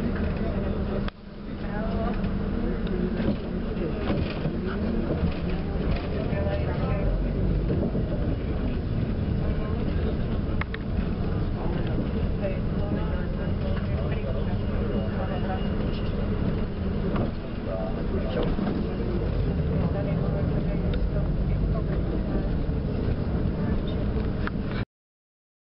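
Inside a moving bus: the engine running and road noise carry on steadily as the bus drives along, with background voices. The sound briefly drops out about a second in.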